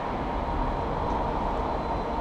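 Steady low rumble and hiss of workshop background noise, with a faint steady whine.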